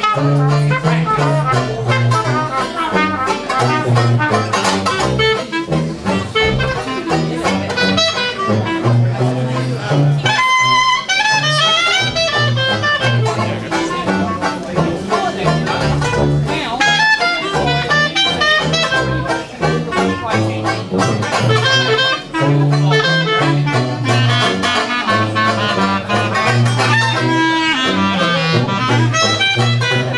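Traditional New Orleans-style jazz quartet playing, with the clarinet taking the lead over strummed banjo and a sousaphone bass line while the trumpet rests. The bass drops out briefly about ten seconds in under a high clarinet run.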